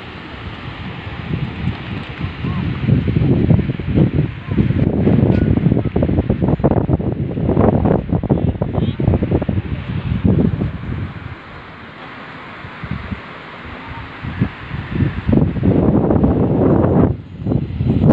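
Wind buffeting a phone's microphone in uneven gusts, loudest through the middle and again shortly before the end, with a calmer spell between.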